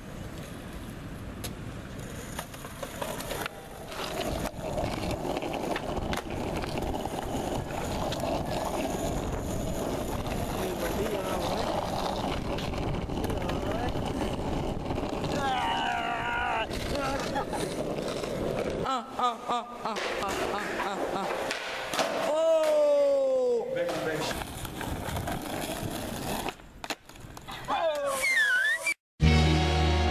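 Skateboard wheels rolling over rough asphalt in a steady rumble, with voices calling and shouting out now and then in the second half.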